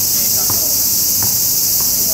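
A loud, steady, high-pitched chorus of summer insects that does not let up, with a few faint knocks under it.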